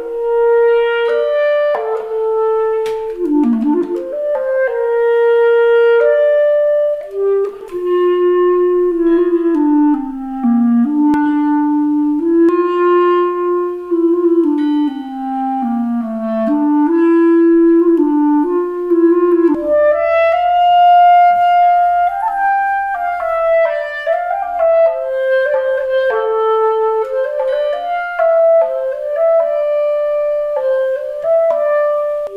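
Solo clarinet playing a slow lament melody of long held notes with gliding pitch bends. It moves up to a higher register about two-thirds of the way through.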